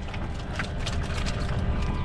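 Steady low outdoor rumble on a boat, with a few light clicks and knocks as stone crabs are picked up off the deck.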